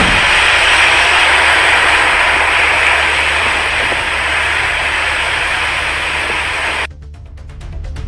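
Loud, steady rushing noise of heavy surf breaking against a seawall, over a low music bed. The surf noise cuts off suddenly about seven seconds in, leaving only the music.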